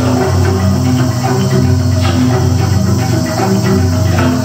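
Live gamelan ensemble with a drum kit: metallophones play quick, ringing interlocking notes over a deep sustained bass.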